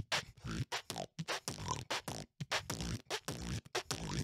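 A man beatboxing close into a microphone: a fast run of mouth-made drum sounds, sharp kick- and snare-like hits with short gaps between them.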